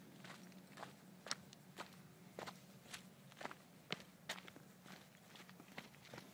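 Faint footsteps on a stony mountain path, about two steps a second in an uneven walking rhythm.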